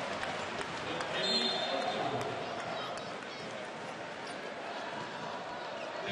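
Basketball arena crowd noise, with scattered voices and a few faint bounces of the ball on the court.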